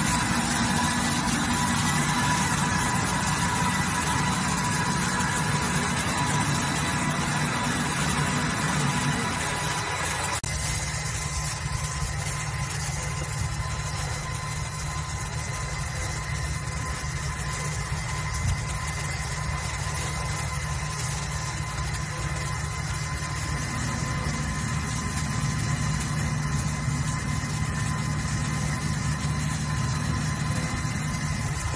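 Dazzini PD1500 diamond wire saw cutting andesite: a steady machine hum with a thin high whine over it. A hiss over the hum drops away suddenly about a third of the way in.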